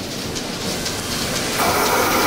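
Steady hiss and hum of milking-parlour machinery, with a higher whine coming in about one and a half seconds in.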